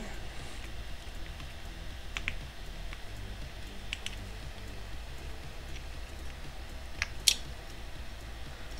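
A few light clicks as a small precision screwdriver drives a screw into a plastic model part, the sharpest one about seven seconds in, over a steady low hum.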